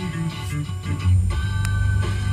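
Guitar music playing on the car radio: a short plucked-guitar music bed between radio announcements, heard in the car's cabin.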